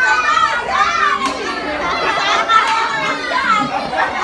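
Many young children chattering and calling out at once, a hubbub of overlapping voices, with no music playing.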